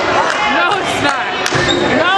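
Voices of players and spectators chattering in a school gym, with a basketball bouncing on the court floor once about three-quarters of the way through.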